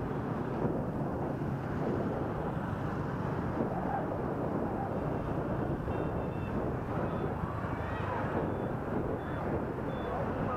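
Steady rush of wind and road noise from a moving motorbike in dense city traffic, with engines all around. A few faint, short, high beeps come in from about six seconds in.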